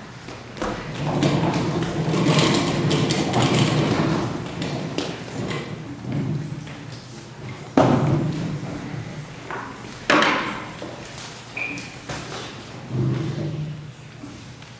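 Stage noises during a dark scene change: a few seconds of shuffling and scraping, then a series of heavy thumps and knocks that echo in a large hall, the two loudest about eight and ten seconds in, with a brief high ping between them.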